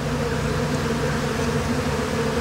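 Steady hum of many honeybees flying around an open hive box and the swarm's frames.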